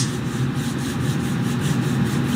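Palms rubbing together, a dry rubbing in quick repeated strokes.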